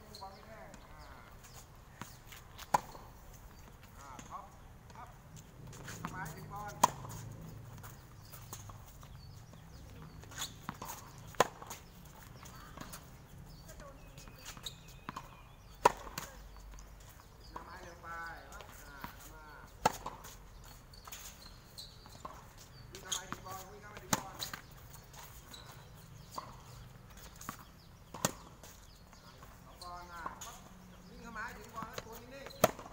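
Tennis balls struck with rackets in a rally on a hard court. There is a sharp pop from the near racket about every four seconds, with fainter hits and bounces in between.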